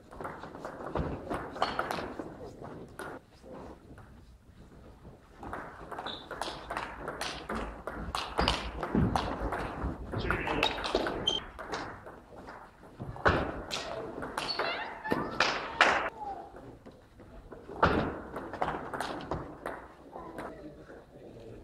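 Table tennis being played in a sports hall: the ball clicks and taps off the bats and table in quick runs during rallies, with pauses between points.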